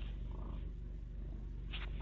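Domestic cat purring steadily, a continuous low rumble, with a short click near the end.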